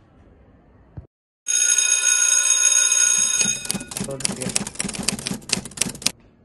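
A bell ringing loudly, a school bell marking the end of class, with a bright metallic ring of many high tones. It starts about a second and a half in, after a brief cut to silence, and for the last couple of seconds breaks into a rapid clatter of strikes.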